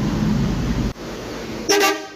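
Mercedes-Benz coach's diesel engine running steadily, cut off abruptly about a second in. Near the end comes a short, loud blast of a bus horn.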